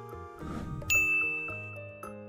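A bright, bell-like ding sound effect strikes about a second in and rings on, fading slowly, over light children's background music. Just before it comes a short rushing noise.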